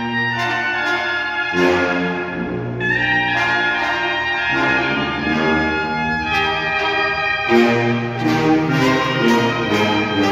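Mexican banda playing a slow tune: trumpets and trombones hold sustained chords that change every few seconds over steady bass drum and cymbal beats.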